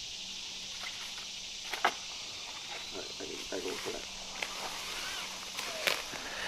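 Steady chorus of summer insects in the woods, with scattered faint rustles and two sharp knocks, one about two seconds in and a louder one near the end.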